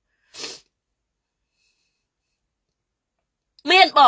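A single short, sharp breath noise from a woman about half a second in, a quick puff of air much quieter than her voice; she starts talking again near the end.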